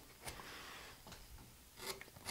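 Hand-pushed deep U-gouge (sweep 11) cutting into limewood: faint scraping of the blade through the grain, with a sharper scrape near the end.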